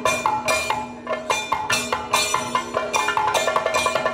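Kathakali percussion accompaniment playing a quick, even rhythm of sharp drum and metal strokes, with ringing struck tones over a steady low drone.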